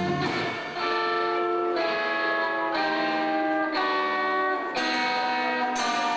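Live rock band playing: electric guitar rings out sustained chords that change about once a second, with sharp hits at some of the changes. The low bass notes drop out just after the start.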